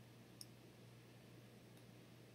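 Near silence: faint room tone with a steady low hum and a single faint click about half a second in.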